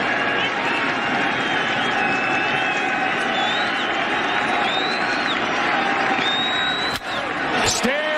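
Baseball stadium crowd noise on a TV broadcast, steady and loud with high gliding whistles over it. About seven seconds in there is a single sharp crack: the bat meeting a 94 mph fastball for a home run to right field.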